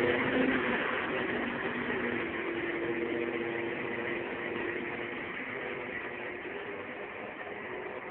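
A Mustang and a Camaro at full throttle down a drag strip, their engine sound fading steadily as the cars pull away into the distance.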